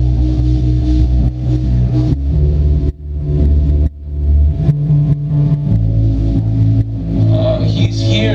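Live indie rock band playing an instrumental passage without vocals: electric bass holding low notes, drums, and electric guitars through amplifiers. The band drops out briefly twice near the middle.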